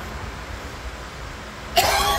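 Low steady room noise, then near the end a man's sudden loud, harsh cough that runs into a cursed exclamation of "Damn!"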